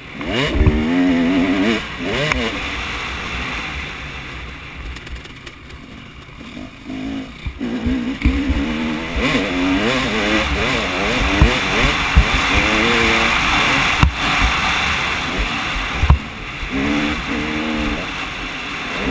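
Motocross bike engine revving hard as the rider accelerates, pitch rising and dropping with each gear change, with wind rushing over the helmet-mounted microphone. The throttle eases off for a few seconds near the middle, then the engine pulls hard again, with a few sharp knocks from the bike over the track.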